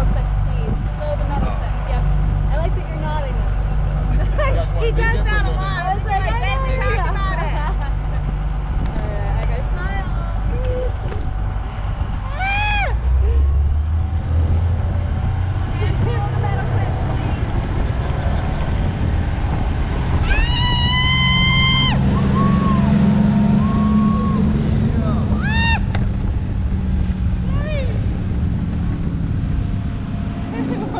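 A parasail boat's engine runs steadily, then throttles up about thirteen seconds in for the launch of the riders from the rear deck. Voices are heard over it, with a loud, high cry about twenty seconds in.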